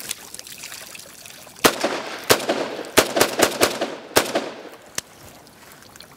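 Robinson Armament XCR rifle firing about eight shots, irregularly spaced, with several in quick succession around the middle, each followed by an echo. The rifle keeps cycling normally straight after being submerged in water with sand inside it.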